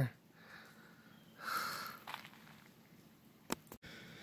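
A quiet outdoor hush with one short, soft breath close to the microphone about one and a half seconds in, and a faint click near the end.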